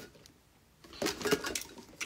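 Light handling noise of skincare bottles being put down and picked up, with a few small clicks and knocks starting about a second in.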